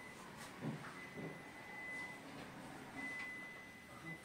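Quiet indoor room tone with a thin, steady high-pitched tone that fades out and returns, and a few faint soft sounds.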